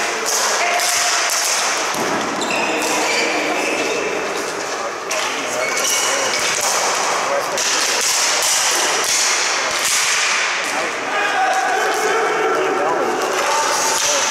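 Ball hockey play in a large indoor arena: sharp clacks of sticks hitting the ball and the floor, scattered all through, under players' shouts.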